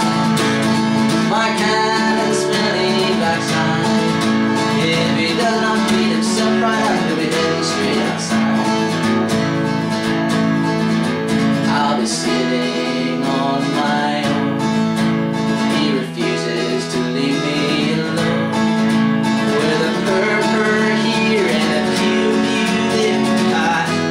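Brand-new cutaway acoustic guitar strummed in a steady rhythm, playing chords throughout.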